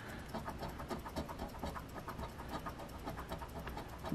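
A coin scraping the latex coating off a scratch-off lottery ticket in quick, even back-and-forth strokes, quiet and steady.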